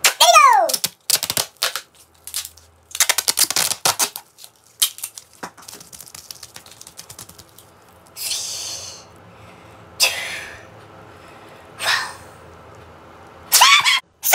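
A short falling vocal cry, then pink adhesive tape crackling in rapid runs of clicks as it is pulled off the roll, followed by three short rasping rips of tape a couple of seconds apart.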